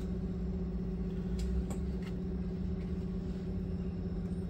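Mitsubishi Electric Mr.Slim inverter air-conditioner running with its compressor and indoor fan motor on: a steady low hum with a constant tone. A couple of faint clicks come about a second and a half in.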